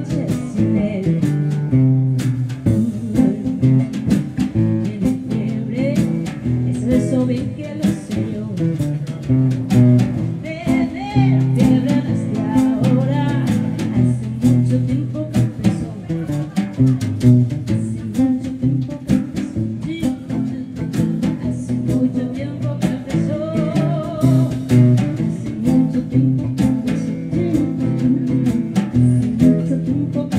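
Small live band playing a jazzy blues number: acoustic guitar with a drum kit keeping time on drums and cymbals, and a woman singing in places.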